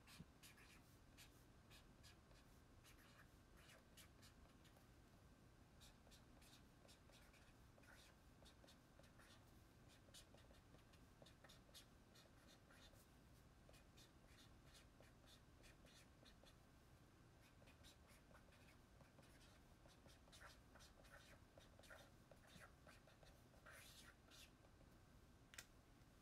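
Pen writing on a paper tanabata wish strip (tanzaku): faint, quick scratching strokes in short runs with pauses between them.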